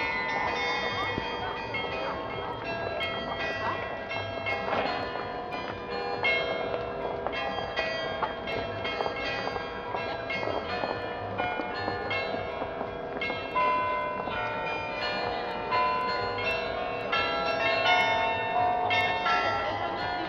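Town hall carillon playing a Christmas melody: bells struck one after another in a running tune, each note ringing on under the next.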